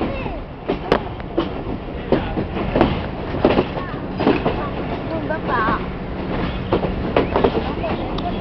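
Riding noise of a passenger train heard from aboard: a steady rumble of wheels on rail, broken by a dozen or so irregular sharp clacks as the wheels cross rail joints and points in the station yard. Voices can be heard faintly underneath.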